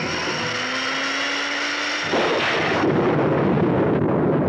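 An electric kitchen blender switched on: a faint motor tone rises slowly in pitch, then about two seconds in a louder rushing churn sets in as the blender runs at speed.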